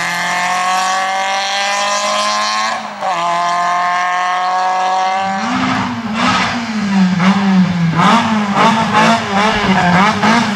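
The four-cylinder engine of a Mk1 Volkswagen Golf slalom car pulls hard under full throttle, with one short break for an upshift about three seconds in. In the second half the engine revs up and down quickly and repeatedly, on and off the throttle as the car weaves through the cones, and it is louder now.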